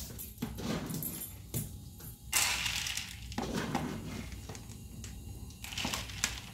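Dry dog kibble scooped out of a plastic storage bin and poured into a plastic bowl, rattling in several short bursts, the longest a little past two seconds in.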